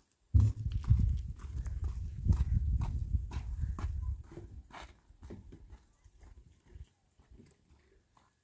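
Footsteps on dry, stony ground, a steady run of short scuffing steps, with a heavy low rumble on the microphone through the first half that fades out after about four and a half seconds.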